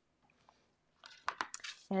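Folded cardstock card base being picked up and handled: a short paper rustle with a few light taps, starting about a second in after near silence.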